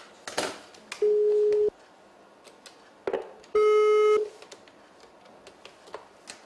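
Two loud electronic beeps on one steady low tone, each about two-thirds of a second long, the second buzzier than the first. Each beep comes right after a short crackle, the first about a second in and the second near the middle.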